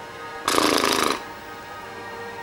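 A person blowing a loud raspberry, a wet flapping lip trill lasting about two-thirds of a second, starting about half a second in.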